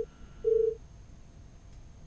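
A short steady beep of a telephone line at the start, then a second, louder one about half a second in.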